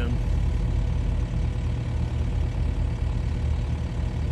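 Boat engine idling steadily with a low hum.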